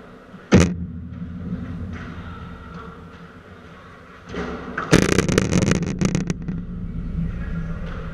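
Impacts of a padel rally close to the camera: a sharp bang about half a second in, then a rattling clatter lasting just over a second about five seconds in, as of the ball and play shaking the court's metal mesh enclosure, with a low rumble in between.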